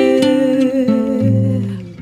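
A woman's wordless, hummed note held over nylon-string acoustic guitar chords. The note wavers slightly partway through and fades near the end.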